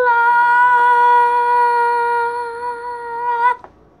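A child singing one long, steady note that is held for about three and a half seconds and then stops suddenly.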